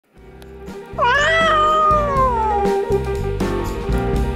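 A cat meowing once in a long call that starts about a second in, rises, then slowly falls away, over background music with a bass line.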